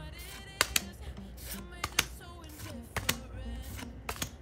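Pokémon trading cards being flicked through one by one, each card slid off the stack with a crisp paper snap; the clicks come in pairs about once a second.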